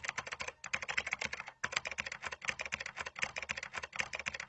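Computer keyboard typing sound effect: a fast, dense run of key clicks, broken by brief pauses about half a second and a second and a half in.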